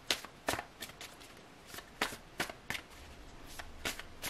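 Tarot cards being shuffled by hand: a string of about ten irregular, sharp card flicks and snaps.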